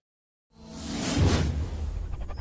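Half a second of silence, then a whoosh sound effect swelling up and peaking about a second in, with a low rumble underneath, as an animated title flies in.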